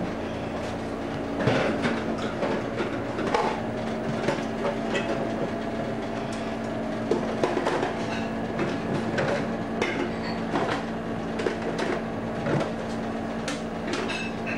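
Items being handled and moved about inside an open refrigerator, giving scattered clinks and knocks over a steady hum.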